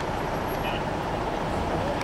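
Steady road traffic noise: the running hum and tyre rush of vehicles on a wide city street.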